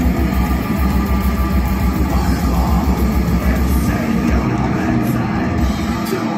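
Live heavy rock band playing loud, heard from the crowd, with the sound distorted and dominated by a dense low rumble of bass guitar and drums. The deepest rumble eases about four seconds in.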